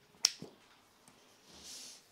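A single sharp click about a quarter of a second in, then a short, soft breath drawn in just before speech resumes, picked up close on a clip-on microphone.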